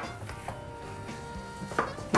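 Gloved hands squishing and kneading cooked potato into a mash in a ceramic bowl, with a soft sustained background music chord underneath and a short sharp knock near the end.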